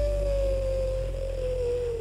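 A live band ending a song: one long held note slides slowly down in pitch and fades, over a dying low bass.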